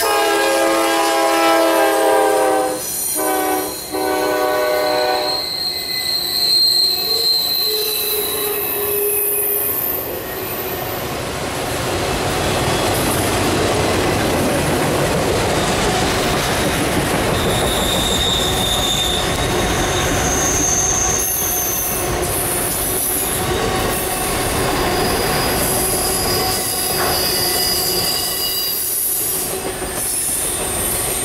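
The lead locomotive's horn, on a Norfolk Southern GE Dash 9-40CW, sounds as it passes close by: a long blast, then two shorter ones, ending about five seconds in. After that the train's autorack cars roll past with a steady rumble of wheels on rail and intermittent high-pitched wheel squeal on the curve.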